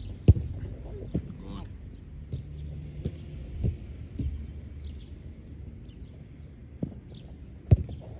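Sharp thuds of a football being kicked and struck during shot-stopping drills. The two loudest come about a third of a second in and near the end, with fainter knocks between.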